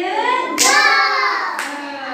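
Children's voices singing together in a loud group, with a sharp hand clap about half a second in and another near the end.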